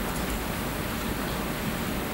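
Steady hiss of room tone and recording noise in a meeting room, with no distinct event.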